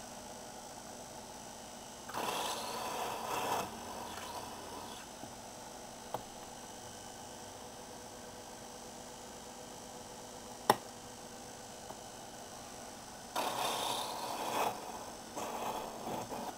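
A small benchtop mill's motor running steadily while a drill bit cuts into a model diesel piston blank in two short spells, about two seconds in and again near the end. A single sharp click comes between them.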